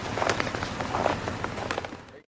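Scuffling and footsteps on packed snow: a few faint crunches and ticks over a steady outdoor hiss, fading away near the end.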